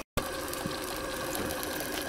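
Small brass twin-cylinder vertical steam engine of a model boat running steadily, with a fast, even mechanical beat; the sound cuts out for an instant right at the start.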